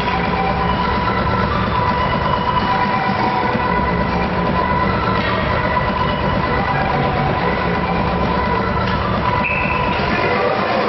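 Steady, even rumble and hum of an indoor ice rink's background noise during play, with faint high tones drifting in and out.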